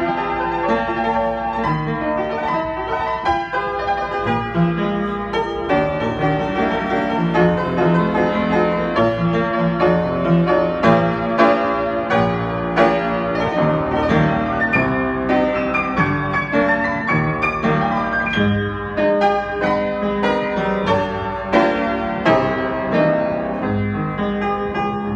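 Sohmer & Son studio upright piano played with both hands in a continuous flowing passage of many notes over a bass line. The piano is not yet fully tuned, as the seller notes.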